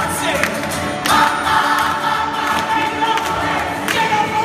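A gospel choir singing live over acoustic guitar, the voices holding long notes.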